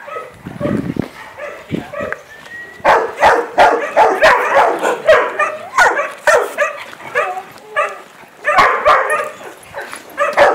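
Dogs barking in a kennel yard, the barks coming thick and overlapping from about three seconds in, with some yips mixed in.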